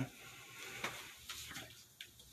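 Quiet room tone with a few faint small clicks and knocks.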